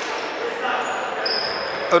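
A basketball being dribbled on a hardwood gym floor, with two brief high sneaker squeaks about a second in and players' voices in the hall.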